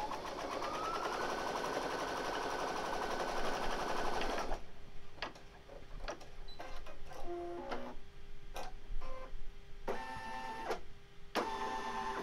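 Brother Innov-is embroidery machine stitching a straight line: the motor speeds up with a rising whine in the first second, runs fast and steady, and stops suddenly after about four and a half seconds. After it stops come a faint hum, scattered clicks and short motor whirs as the embroidery arm moves the hoop.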